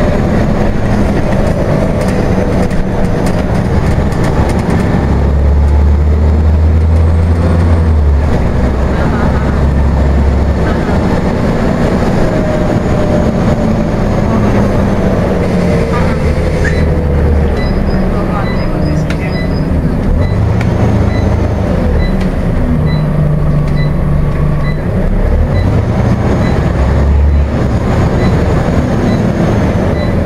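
Inside a moving Scania OmniCity single-deck bus: the engine and transmission run under a heavy low rumble, their pitch rising and falling as the bus pulls away and slows, with road noise beneath. Through the second half a faint regular beep or tick repeats for several seconds.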